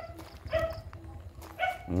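A dog barking in short, spaced barks, about three over two seconds.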